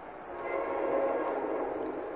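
Train horn sounding one blast of about a second and a half, several steady tones at once.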